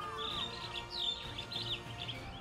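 Birds chirping, a string of quick, high sliding notes, over background music.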